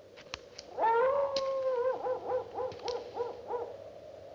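A few sharp clicks, then a long howling cry that swoops up, holds for about a second, and breaks into a run of about six short wavering pulses before it fades.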